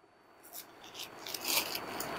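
Silk saree fabric rustling and rubbing as it is handled and unfolded, starting faint and growing louder through the second half.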